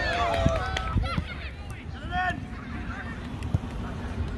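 Several people shouting and calling out during youth soccer play, their voices rising and falling in pitch, most of it in the first two and a half seconds. Underneath is a steady low rumble.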